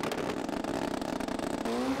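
A stretched Suzuki Hayabusa super street drag bike's engine running steadily on the start line before launch, a rapid, even pulsing note.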